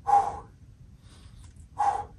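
A man's short, forceful breaths out with a voiced grunt, twice, once at the start and again near the end, each with a rep of side-plank hip dips under exertion.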